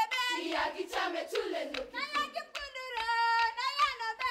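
Girls' choir singing a Marakwet folk song with steady hand claps, the voices holding one long high note about three seconds in.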